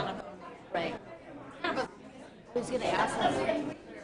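Indistinct chatter of people talking after a meeting, with no words clear, one voice louder for about a second past the middle.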